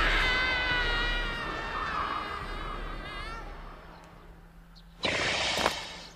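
A long, high, drawn-out scream that slowly fades and wavers as it dies away. After a pause, a short burst of hissing noise comes about five seconds in.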